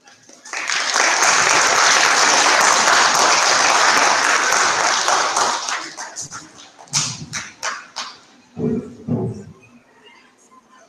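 Audience applause: a dense burst of clapping that thins to a few scattered claps about six seconds in, with a couple of short shouts from the crowd near the end.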